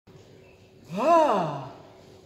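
A single wordless voiced exclamation, an 'ahh' that rises then falls in pitch, about a second in, from a puppeteer's character voice.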